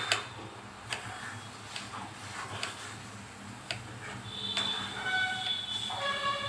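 Kitchen knife slicing a cucumber into rounds on a wooden chopping board, each cut ending in a sharp tap of the blade on the board, about one a second. A high, steady whistling tone rises in the background over the last second and a half.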